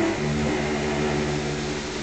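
Bowed cello and double bass holding long low notes, moving to a new note just after the start.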